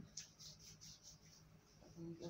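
Near silence: faint background room tone.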